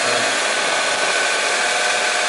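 Car engine idling, heard from underneath the car: a steady whooshing noise with a faint, steady whine on top.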